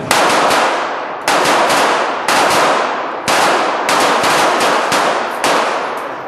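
Pistol shots in an indoor shooting range: the loudest come roughly once a second, with quicker, fainter shots between them, and each one rings on in the hall's echo.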